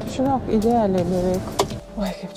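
A person's voice making one drawn-out utterance whose pitch wavers up and down, followed by a single short click.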